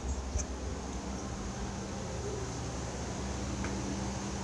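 Steady low mechanical hum with a few faint clicks.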